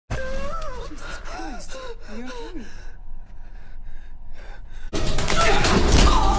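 A woman's gasping breaths and short voiced cries that slide up and down in pitch, turning into quieter, breathier gasps. About five seconds in, loud film music cuts in suddenly.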